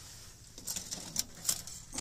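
Kindling fire crackling inside a folding titanium wood-burning stove: irregular sharp pops and snaps begin about half a second in.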